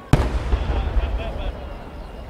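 A single loud bang from a 10-gō (30 cm) aerial firework shell bursting high overhead, about a tenth of a second in. A long low rumbling echo follows and fades over the next second and a half.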